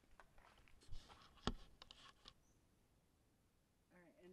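Near silence with a few faint knocks and clicks from handling in the first half, the sharpest about one and a half seconds in.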